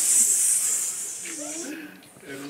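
A group of people hissing a long, loud "S" through smiling lips, pushed out with the belly muscles in a breathing exercise; the hiss stops near the end, with a short voice just before.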